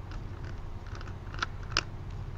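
A few faint clicks from a computer mouse being scrolled, the two clearest late on, over a low steady hum.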